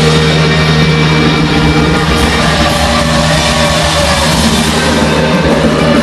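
Post-hardcore band playing loud and live: distorted electric guitars, bass and drum kit playing without a break.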